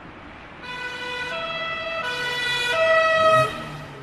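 Two-tone emergency-vehicle siren alternating between a high and a low pitch about every two-thirds of a second, growing louder, then cutting off suddenly about three and a half seconds in.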